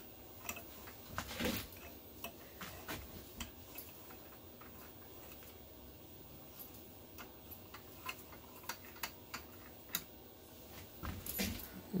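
Faint, irregular clicks and ticks as a 3/8-inch tap is turned by hand with a sliding T-bar tap wrench, cutting threads through a 3/16-inch mild steel plate.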